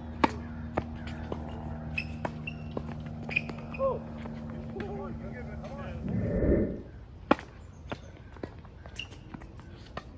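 Tennis ball being struck by rackets and bouncing on a hard court during a rally, heard as sharp pops at irregular intervals, the loudest about seven seconds in. A steady low hum runs under the first six seconds, and a swell of low rumbling noise comes just after six seconds.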